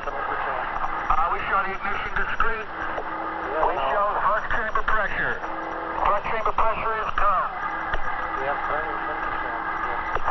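Indistinct, overlapping voices over mission-control radio voice loops, with a narrow, radio-like sound and a few short steady tones.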